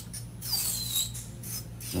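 Electric nail drill with a small cuticle bit grinding acrylic at the nail's cuticle edge: a steady motor hum under intermittent high-pitched scraping, with a short falling squeal about half a second in.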